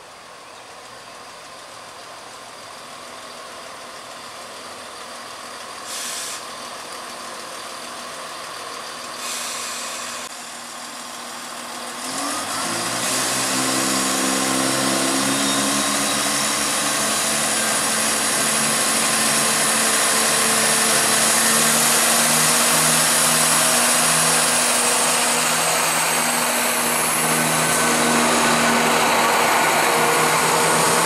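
Southern passenger multiple-unit trains at a station platform. The first part is quieter, with two short hisses. About twelve seconds in, a train's running sound rises in pitch and then carries on loud and steady, with held tones and a high whine, as it passes close by.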